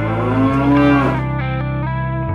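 A cow mooing once, the call rising and then falling in pitch and lasting about a second, over guitar music.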